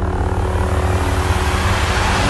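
Lightsaber humming steadily: a low electric buzz with a few steady higher tones over it.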